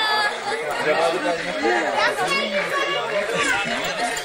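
Several people talking at once, their voices overlapping in casual chatter.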